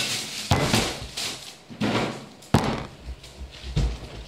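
A 2-litre plastic bottle with a little liquid in it, flipped and landing on a wooden table: two loud thuds, about half a second in and about two and a half seconds in, then a smaller knock near the end.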